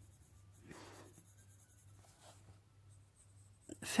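Faint scratching of a Polychromos coloured pencil being stroked across a colouring-book page, in a few soft strokes.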